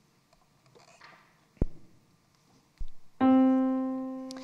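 A single middle C struck on an electric keyboard about three seconds in, held and slowly fading. Two soft knocks come before it.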